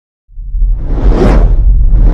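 Whoosh sound effect swelling over a deep rumble, part of a TV channel's animated logo intro. It starts after a brief silence and peaks a little past a second in.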